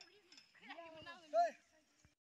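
Children's voices calling out, loudest about a second and a half in, then fading away.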